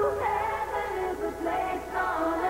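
Music: several layered, sustained tones that slide up and down in pitch, with a voice-like synthetic quality.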